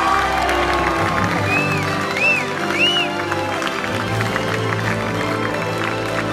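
Music playing while a crowd of guests claps and cheers to welcome the newly married couple.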